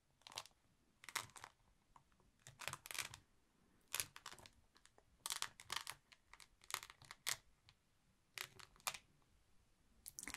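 Honeycomb beeswax sheet being folded and creased by fingertips on a cloth: about a dozen short, sharp, sticky crinkling sounds in irregular clusters, with quiet gaps between them.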